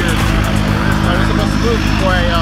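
An engine running steadily, a low even drone, with faint voices over it.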